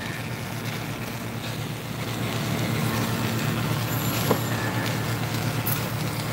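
Submerged arc welding tractor running along its track while it welds a seam in steel plate: a steady low electrical hum with an even hiss over it, and a faint tick a little after four seconds in.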